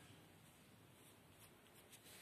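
Faint scratching of a pen drawing lines on paper, over a low steady hiss.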